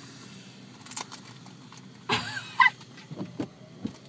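Steady low noise inside a car, with a short, high-pitched muffled vocal sound from the groggy passenger a little after two seconds in, and a few faint clicks.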